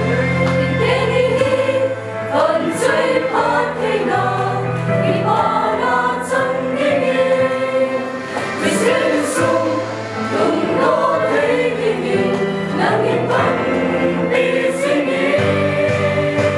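Mixed choir of young men and women singing together, over held low accompaniment notes that change every couple of seconds.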